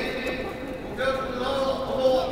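A man's speech carried over a stadium public-address system, pausing briefly and picking up again about a second in.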